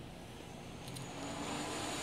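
A passing vehicle: a rushing noise with a faint low hum, slowly growing louder.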